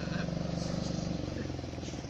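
A low steady engine hum, a motor running at idle, which weakens a little about halfway through.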